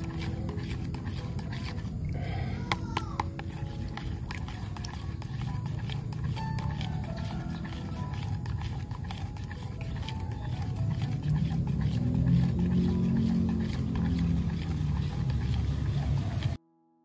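Liquid fertilizer solution being stirred with a thin stick in a plastic dipper, with light ticks of the stirrer against the sides over a steady low rumble.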